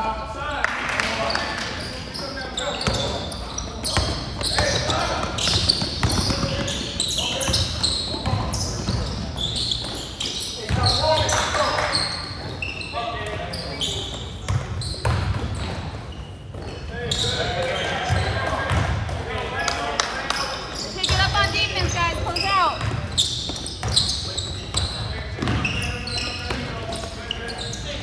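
Basketball dribbled and bouncing on a hard gym court, with sneakers squeaking and indistinct voices of players and spectators, all in a large gym hall.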